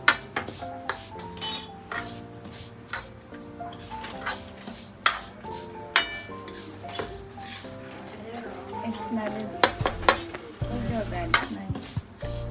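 Steel ladle scraping and knocking against a metal kadhai while stirring dry-roasting bread crumbs for bread halwa, with frequent sharp scrapes and clanks.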